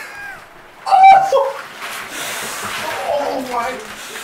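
Ice water sloshing in a bathtub as a man lowers himself into an ice bath, with a loud, sharp cry from the cold about a second in and more cries of shock near the end.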